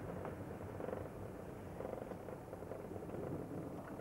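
Steady low rumble of a car's engine and tyres heard from inside the cabin while driving slowly over a hail-covered road, with a few faint clicks.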